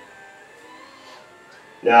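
Permobil F5 VS power wheelchair's electric standing actuators running faintly, a thin whine that dips in pitch and comes back as the seat rises toward full standing. A man's voice starts near the end.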